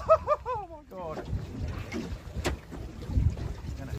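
Laughter for about the first second, then low wind rumble on the microphone and water noise aboard a small boat, with a single sharp click about two and a half seconds in.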